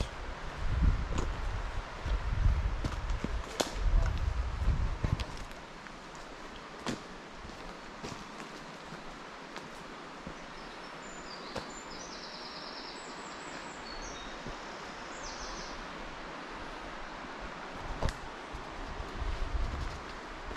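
Woodland riverside ambience: a steady hiss of flowing river water and leaves. Low wind buffets the microphone for the first five seconds or so. A few sharp clicks come through, and faint high bird chirps sound around the middle.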